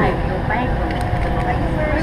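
Steady low rumble of an airliner cabin, with quiet talking over it.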